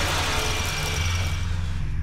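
Electric drill running in a film soundtrack: a loud whirring hiss that fades out near the end, over a steady low hum.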